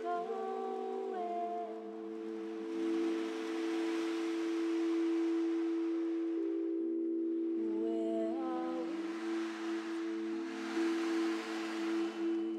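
Several singing bowls ringing together in steady, overlapping sustained tones, slowly wavering against each other. A voice hums short sliding notes over them near the start and again about 8 s in, and soft rushing swells of noise rise and fall twice.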